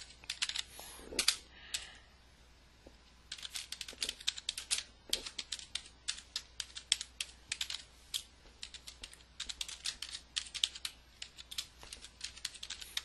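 Typing on a computer keyboard: quick runs of keystrokes in bursts, with a brief lull about two seconds in.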